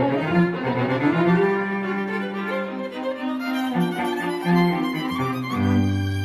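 A string quartet of three violins and a cello playing together, with sustained bowed notes over a moving cello bass line. Near the end a strong low cello note swells under the violins.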